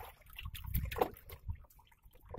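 Water lapping faintly against the hull of a small wooden fishing boat at sea, with a few light knocks scattered through it.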